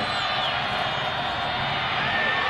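Steady stadium crowd noise at a football game, heard through the TV broadcast audio.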